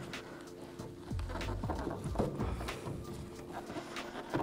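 Faint knocks and creaks of a plastic taillight housing being tugged and rocked rearward against the pins that hold it in the truck bed, still not free, over a low steady background tone.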